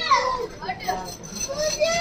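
A child's high-pitched call that slides down in pitch right at the start, followed by softer voices.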